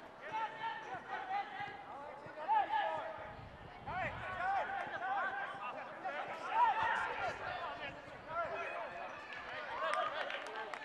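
Indistinct shouts and calls from voices around a football pitch during open play, carrying across the ground without clear words.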